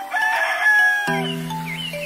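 A rooster crowing once, about a second long and ending in a falling note, then the background music resumes.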